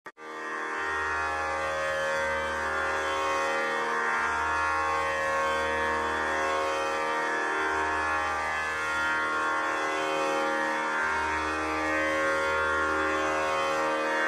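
Tanpura drone: the strings ring together in one steady, unbroken chord that holds the tonic for a Hindustani raga, with a slow swell and fade in the low notes as the strings are plucked in turn.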